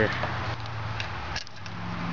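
Compression tester's quick-connect coupler being unsnapped from the hose fitting: a few faint metal clicks about a second in, over a steady low hum.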